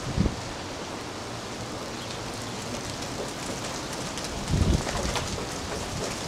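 Heavy rain falling steadily in a severe thunderstorm, with a brief low rumble about four and a half seconds in.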